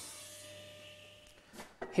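Table saw motor running without cutting: a steady hum with a faint hiss that fades away over about a second and a half.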